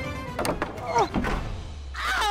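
Background music with dramatic impact thuds, one about half a second in and the loudest about a second in, each followed by a short downward-sliding pitched sound.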